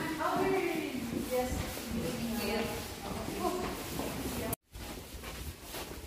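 Indistinct voices talking as people walk, cut by a brief gap of silence about four and a half seconds in.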